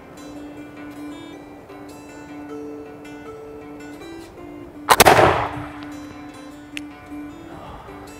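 A Pedersoli Brown Bess flintlock smoothbore musket, loaded with homemade black powder, fires a single loud shot about five seconds in. Background music plays throughout.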